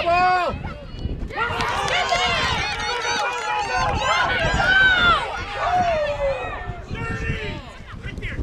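Spectators cheering and yelling during a play, many high voices shouting over one another, loudest about five seconds in and dying down near the end.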